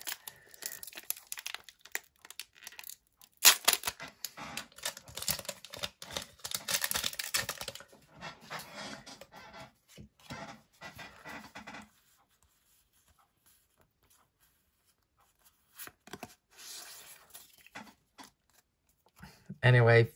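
A foil Pokémon TCG booster pack wrapper being torn open and crinkled by hand. The loudest tearing comes about three and a half seconds in and runs for a few seconds, followed by fainter crinkling, a stretch of near silence, and a little more handling near the end.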